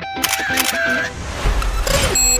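Camera shutter clicks, used as a sound effect, as the guitar music cuts out. Near the end a rising whoosh with a deep bass swell leads into electronic music.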